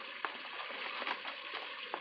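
Radio-drama sound effect of water spraying steadily from a burst pipe under a sink, a continuous hiss with a few faint clicks.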